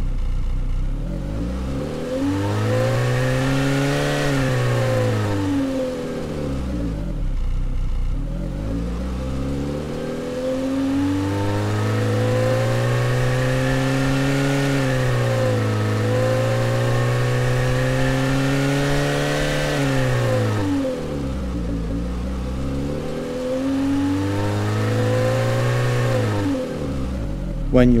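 Car engine recording resynthesized by the AudioMotors plug-in in RPM mode, revving up and back down as the target RPM is swept. There are three revs: one early on, a long climb held high through the middle with a brief dip, and a short one near the end.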